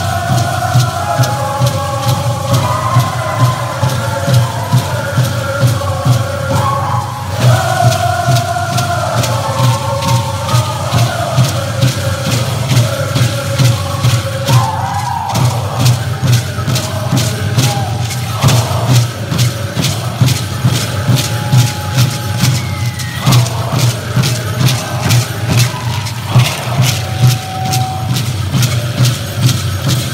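Chorus of singers chanting a Pueblo buffalo dance song over a steady, even drumbeat, with the shaking of the dancers' rattles on each beat. The singing is full for about the first fifteen seconds and thins to a few held notes after that, while the drum and rattles carry on.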